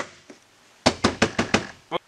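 Hard plastic interior door-handle trim being slid and pressed into place on a car door panel: one sharp click, then a quick run of about five clicks and taps about a second later as it seats.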